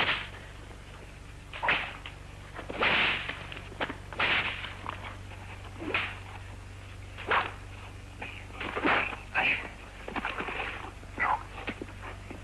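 Fistfight sound effects from a 1950s film soundtrack: about ten sharp punch smacks and scuffles, irregularly spaced a second or so apart.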